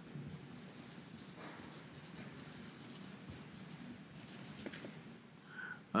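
Felt-tip marker writing Chinese characters on a board: a run of short, faint pen strokes.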